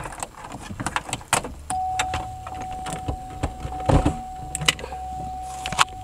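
Light clicks and small rattles of hands working loose plastic dashboard trim in a car, with a steady high tone coming in about two seconds in.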